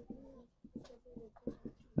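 A felt-tip marker writing on a whiteboard: faint short squeaks and small taps as the strokes of a word go down.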